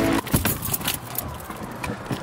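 Background music cuts off just after the start, followed by a string of small irregular clicks, knocks and rustling from handling, the kind of sound keys jangling and a camera being moved make.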